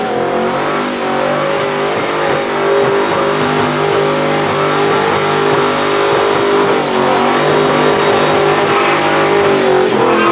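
A vehicle's engine held at high revs during a burnout, its drive tyres spinning in a cloud of smoke; it gets louder a couple of seconds in.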